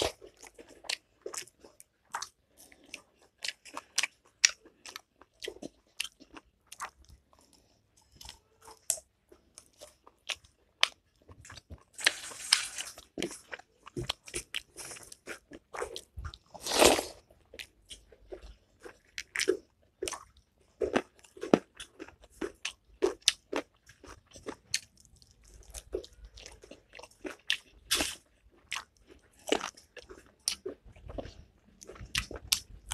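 A person chewing and crunching food close to the microphone, with many short wet mouth clicks and smacks, as she eats rice and curry by hand. A few longer, louder bursts come around the middle.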